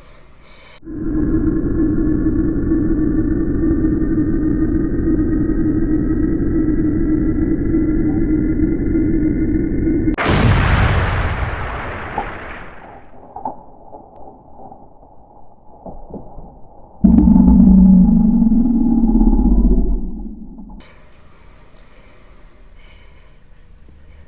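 Cinematic sound effects laid over the footage: a steady low drone with a slowly rising tone for about nine seconds, cut off by a sudden loud boom-like hit that fades away over a few seconds. A second loud, low rumbling hit follows a few seconds later and lasts about three seconds.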